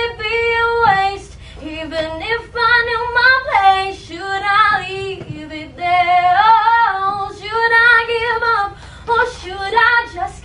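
A young girl singing solo a cappella, with no accompaniment: several phrases of held notes and sliding, turning pitches, separated by short breaths.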